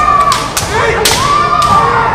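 Kendo fighters' kiai: long, drawn-out yells from inside the men helmets, with sharp clacks of bamboo shinai knocking together three times in the first second or so.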